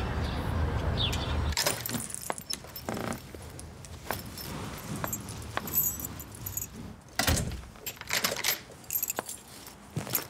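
Low rumble of street traffic for the first second and a half, then keys jangling with the clicks and knocks of a front door being worked, the loudest knock about seven seconds in.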